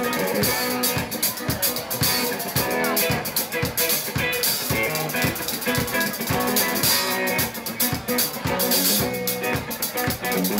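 Live band playing an instrumental passage: electric guitar over a drum kit keeping a steady beat.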